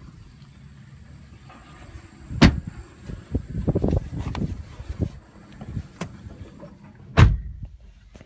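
Car doors on a 2002 Toyota Corolla shutting twice, about five seconds apart, the second the louder. In between come smaller knocks and rustling as someone climbs into the driver's seat.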